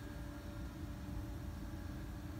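Steady low rumble and hiss with a few faint, steady hum tones underneath, and no distinct knocks or other events: a continuous background hum in a small room.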